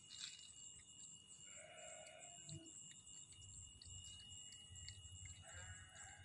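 Near silence, with a faint animal call about one and a half seconds in and another, shorter one near the end.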